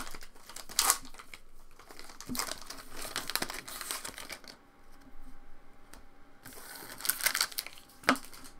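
Foil trading-card pack wrapper torn open and crinkled by hand, in irregular crackling bursts, with the cards then slid out and handled; there is a quieter stretch around five seconds in before another burst of crinkling.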